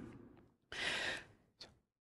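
A man's audible breath, about half a second long, between sentences, followed by a faint click.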